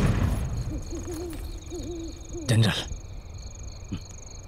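An owl hooting in a run of wavering hoots over faint, evenly repeated high insect chirping, as in a night ambience. About two and a half seconds in, a short loud burst cuts across it.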